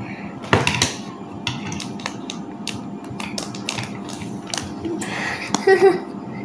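Plastic Lego pieces being handled: a loose series of light, sharp clicks and taps, with a plastic bag crinkling near the end.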